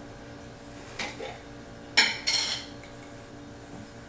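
Small glass clinks while olives are taken from a glass olive jar for a martini garnish: a light clink about a second in, then a sharper clink with a short rattle about two seconds in.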